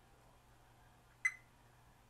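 A Fluke 87 V multimeter in diode-test mode gives one short, high beep about a second in as its probes touch a MOSFET's leads. The beep is a brief chirp, not a continuous tone, which means a normal junction and no short.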